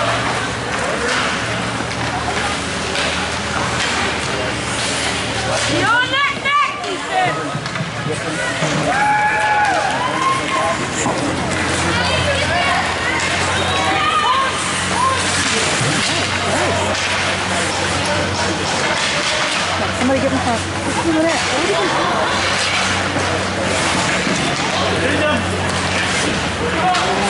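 Ice rink crowd noise during a hockey game: spectators talking and calling out, with louder shouts about six seconds in and again around ten seconds. Beneath them run the scrape of skates on ice and a steady low hum.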